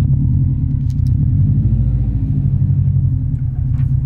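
Car driving slowly, heard from inside the cabin as a steady low rumble of engine and road noise.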